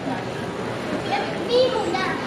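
Shopping-mall crowd chatter, with a child's high voice calling out loudly about one and a half seconds in.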